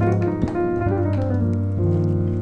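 Piano chords from a keyboard: a spread F diminished triad over A-flat, used in place of an inverted dominant chord, held and ringing. Near the end it moves to an E-flat major add2 chord over G.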